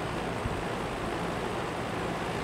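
General Electric W-26 window box fan with a shaded-pole motor, running on medium speed in forward: a steady rush of moving air over a low motor hum.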